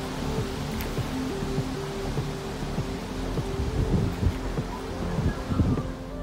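Background music: a slow melody of held notes over a steady rushing noise, with low rumbling bumps in the second half.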